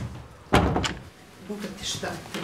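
A door bangs: one loud bang about half a second in, followed by a lighter knock.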